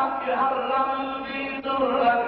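Lebanese zajal: men's voices chanting sung poetry in long, held melodic lines.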